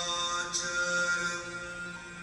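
Devotional dance music: a chanted vocal line holding long, steady notes over a sustained drone, with a brief bright accent about half a second in.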